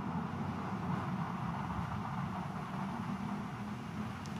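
Steady background rumble and hiss of room ambience, with no distinct event.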